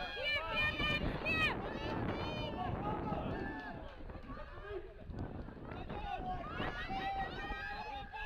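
Several voices shouting and calling over one another, some with long drawn-out yells: spectators urging on the players.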